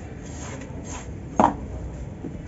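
A knife blade scraping a dry cement block, shaving off dusty powder in soft repeated strokes, then one sharp snap about one and a half seconds in as a chunk of the dry cement breaks off.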